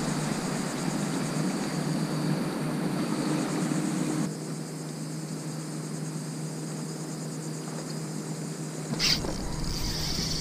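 Outdoor ambience: a steady low hum like a distant motor, with a thin high insect-like buzz over it. The low noise eases about four seconds in, and a short sharp sound comes near the end.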